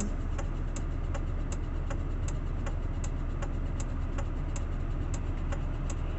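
A car's indicator relay ticking in an even tick-tock over the low, steady hum of the engine running, heard inside the cabin.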